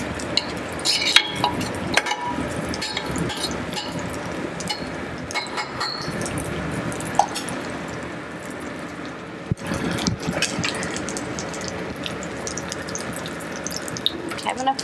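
Carrot latkes sizzling in hot oil in a skillet: a steady crackle with scattered pops and clicks.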